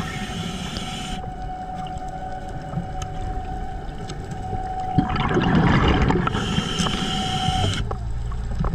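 Underwater sound picked up by a diver's camera: a steady hum from a boat's engine carried through the water, with a sharp knock about five seconds in followed by a second or so of loud rushing, bubbling noise.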